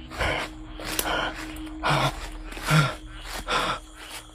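A man breathing hard in short gasps, five breaths about one every 0.8 seconds, some with a little voice in them, over a faint steady hum.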